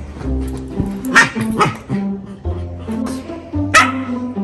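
A West Highland White Terrier barking in play: about three sharp barks, two close together a little over a second in and one near the end, over background music with plucked strings.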